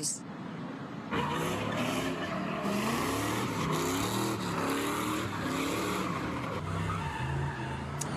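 A pickup truck doing donuts: its engine revving up and down while its tyres screech in a continuous skid on the asphalt. The sound starts about a second in.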